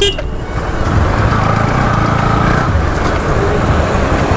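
Steady riding noise from a motorcycle on the move: engine and wind noise running continuously with no break.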